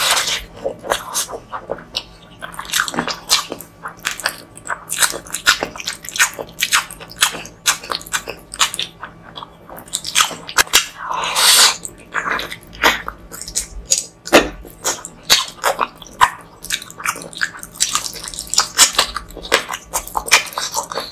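Close-miked eating of curried mutton and chicken with rice by hand: an irregular run of wet chewing and biting clicks and smacks, with a longer, louder noisy sound about eleven seconds in.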